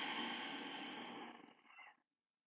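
A woman's long, breathy exhale, a sigh trailing off and fading out about one and a half seconds in.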